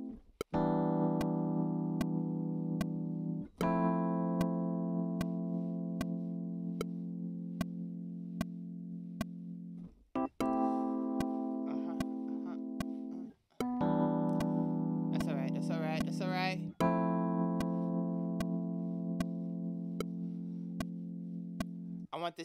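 Keyboard with an electric-piano sound playing long held chords, five in turn with short breaks between them, over a steady metronome click about every two-thirds of a second.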